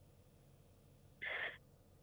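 Near silence broken about a second in by one short, soft breathy sound from a person's voice.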